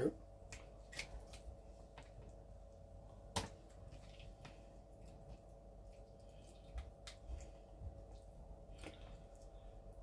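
Faint snips and clicks of kitchen scissors cutting the inner dividing walls out of a raw heart, with one sharper click a little over three seconds in.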